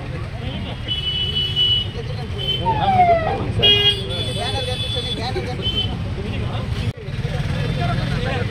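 Street traffic with vehicle horns honking several times, short and long blasts in the first part, over a steady engine rumble and the chatter of a crowd.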